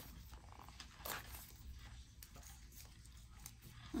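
Faint rustling and light taps of fingers pressing washi tape onto a paper planner page, over a low room hum, with one brief louder rustle about a second in.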